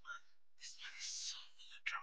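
Faint breathy whispering from a person's voice, in short syllable-like breaths.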